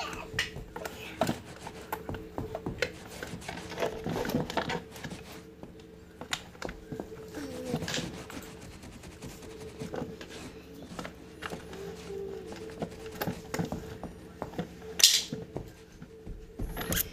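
Plastic doll and toy car being handled close to the microphone: irregular clicks, taps and rubbing, with a sharper, louder clack about a second before the end. A faint steady hum runs underneath.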